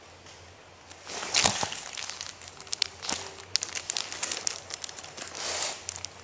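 Handling noise close to the microphone: a rustle about a second in, then a string of irregular clicks and knocks, as the camera is gripped and adjusted.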